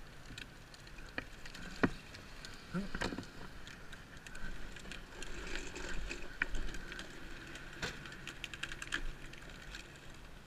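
Bicycle rattling over rough ground, with a run of scattered clicks and knocks and a sharper knock about two seconds in.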